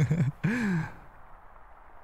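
A man's voice close to the microphone: the end of a soft laugh, then one short breathy vocal sound that rises and falls in pitch about half a second in, followed by a quiet last second.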